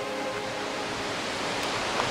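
Steady rush of a waterfall, an even noise with no breaks.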